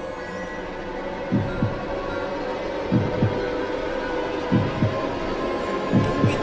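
Slow heartbeat sound effect: four low double thumps, lub-dub, about one pair every second and a half, over a steady humming drone.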